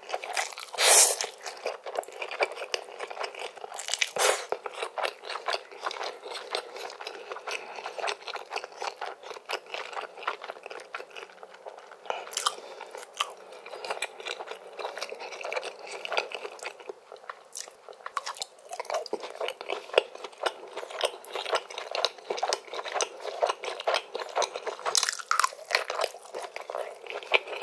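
Close-miked eating sounds: spicy Korean ramen noodles slurped into the mouth near the start, then continuous wet chewing and mouth clicks, with a few louder slurps or bites spaced through.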